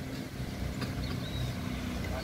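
A motor vehicle's engine running steadily with a low hum, road traffic.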